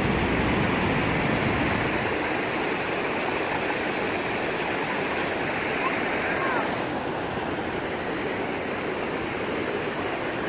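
Fast-flowing Niagara River water rushing and breaking against a rocky shore: a steady, even rush that eases slightly in the second half.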